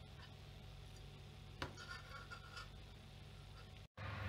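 Faint room tone with a steady low hum, as batter is poured from a stainless steel pot into a metal baking tin. About one and a half seconds in comes a single light click, followed by a second of faint scraping.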